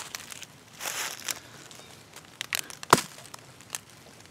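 A folding knife's blade is stabbed into a weathered wooden board with one sharp, loud strike about three seconds in. Before it there is a short rustle and a few small clicks.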